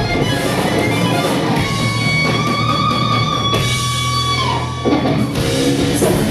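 Heavy metal band playing live: distorted electric guitar over bass and drums, with one lead guitar note held from about two seconds in until about four and a half seconds, then the full band crashes back in.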